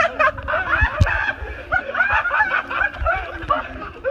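People laughing and snickering in short, broken bursts, with a sharp click about a second in.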